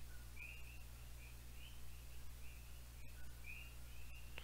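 Faint, short high-pitched chirps from a small animal, repeating roughly every half second, over a steady low hum of room tone.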